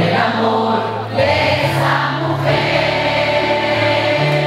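Live pop ballad: a male singer over a backing track, with many voices singing along.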